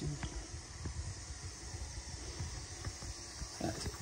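Faint, sparse crackles over a low, uneven rumble: the sound of a crackling-fire video playing on a TV.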